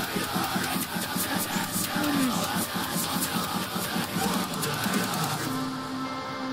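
Heavy metal song playing: rapid pounding drums and distorted guitar. About five and a half seconds in the drums drop away, leaving a held tone.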